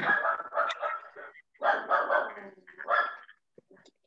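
A person laughing in three bursts over a video-call microphone, the last one short.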